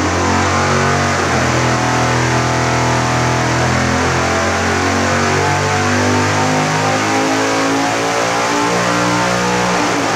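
Supercharged 555 cubic-inch big-block Chevy V8 with an 8-71 Roots blower making a full-throttle dyno pull on E85, running loud and steady, with the blower driven at a higher overdrive after a pulley swap. Background music plays along with it.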